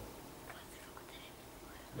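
Quiet room tone with a faint whispering voice, a few soft words about half a second to a second in.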